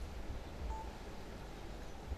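A pause in speech: low room hum through the microphone, with one short faint beep a little under a second in.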